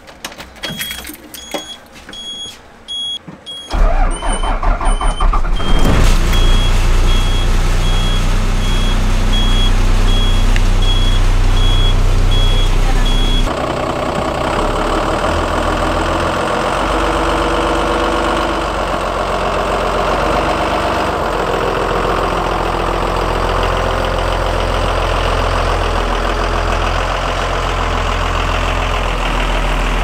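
School bus engine cranked and started about four seconds in, after a steady repeating high beep from the dash, then running steadily; the beeping stops after about thirteen seconds. From then on the engine is heard from outside the bus as it pulls slowly past.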